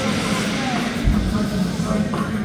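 Busy amusement-park background: voices of people around, a steady low rumble, and a dull thump about halfway through.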